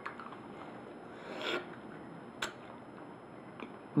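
Quiet handling noises at a table: a soft rustle about a second and a half in, then a single sharp click about a second later and a faint tick near the end.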